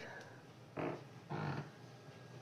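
Quiet room with two brief, soft vocal murmurs a little under a second apart, near the middle.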